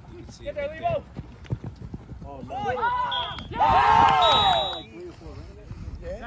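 Players and onlookers yelling on a flag football field during a play, with drawn-out rising and falling shouts that peak loudest about three and a half to five seconds in. Two short, high, steady tones sound during the shouting.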